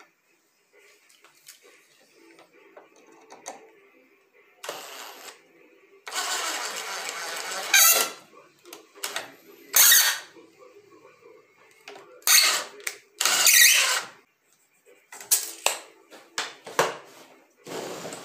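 Cordless drill driving screws into solid pine boards in a series of bursts, each one to two seconds long, with quieter clatter of the wood and tool being handled in between.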